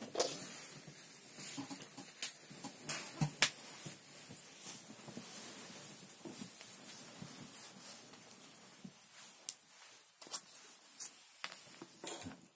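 Faint, scattered clicks and knocks of someone rummaging for a USB cable, over low room noise.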